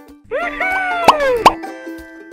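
Cartoon-style sound effects in a break in the jingle: a voice-like sliding call that rises and then falls, then two quick upward 'bloop' pops about a third of a second apart.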